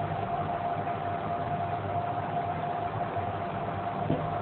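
Steady room hum and hiss with a faint constant high whine, like a running fan or motor, with no distinct strokes or changes.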